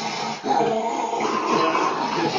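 A dog vocalizing continuously with its mouth open, a wavering, drawn-out whining grumble with a short break about half a second in, while it strains against a man's hand in a play arm-wrestle.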